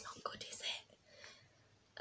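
Soft, breathy whispering in a few short breaths of sound during the first second, fading to quiet.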